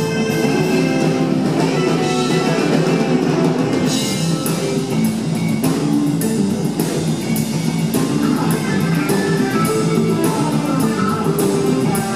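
Live rock band playing an instrumental passage: electric guitar over bass and drum kit, with steady cymbal strikes from about four seconds in, recorded from the audience in a theatre.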